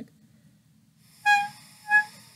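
Clarinet mouthpiece with reed and ligature blown on its own with too little pressure on the reed: mostly breathy air, the reed catching only in two short tones about half a second apart. The weak, unsteady sound is the sign of not enough lip and teeth pressure to make the reed vibrate properly.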